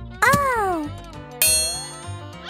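Cartoon sound effects over children's background music with a steady beat: a pitched tone slides downward just after the start, then a bright, ringing chime sounds about a second and a half in.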